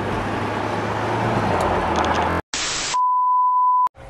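Car cabin noise while driving, a steady road rumble with a low hum, which cuts off sharply about two and a half seconds in. Then comes a half-second burst of TV static and a steady, high test-tone beep lasting just under a second: the sound of a 'technical difficulties' screen.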